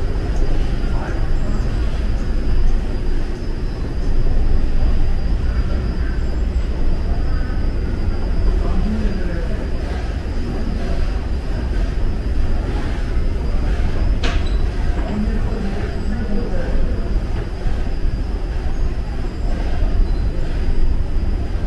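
Steady low rumble of subway-station machinery and trains, heard from a moving escalator, with faint background voices. A single sharp click sounds about fourteen seconds in.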